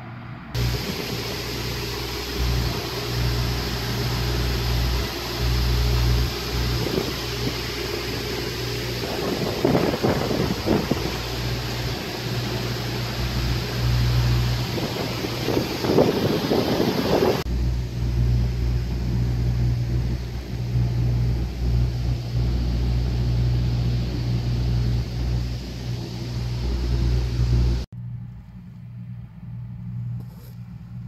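A heavy engine running with a steady low rumble. It cuts in abruptly about half a second in, changes tone partway through, and drops away sharply near the end.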